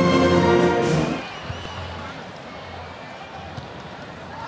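Orchestral recording of a national anthem, brass and strings, ending about a second in; after it, a low, even crowd noise.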